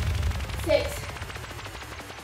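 Background electronic dance music track ending and fading out, leaving a fast run of faint clicks, with a short vocal-like sound about a second in.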